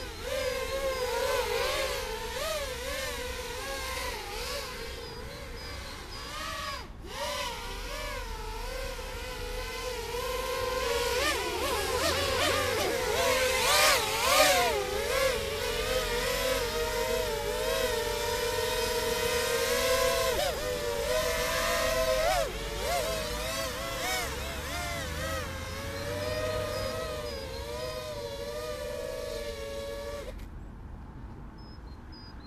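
Mini X8 multirotor's eight small brushless motors (DYS 1306, 3100kV) and propellers whining in flight, the pitch wavering up and down with throttle, loudest about halfway through. Two of its motors are prone to desyncing mid-flight.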